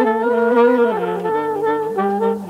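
Several saxophone-family horns played at once by one player, holding sustained notes in close harmony. About halfway through, the chord moves down to a new set of notes.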